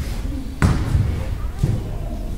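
A basketball bounced twice on a hardwood gym floor, about a second apart: a player's dribbles before a free throw.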